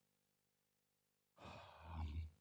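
Near silence, then a faint breath or sigh from the lecturer in the last half second or so before he speaks again.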